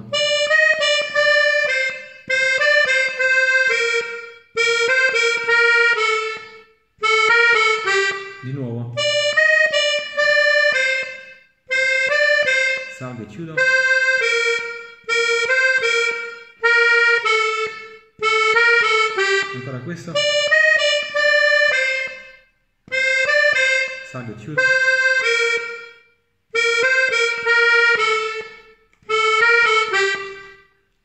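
Major-minor diatonic button accordion (organetto) playing a tarantella napoletana melody slowly, in short phrases of a few notes each, broken by brief pauses.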